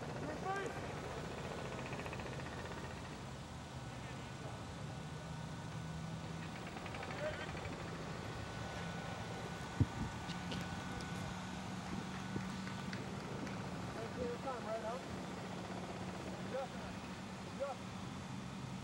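Field-level sound of an outdoor soccer match: a steady low hum under an even background haze, with faint distant shouts from the players and one sharp thud about ten seconds in.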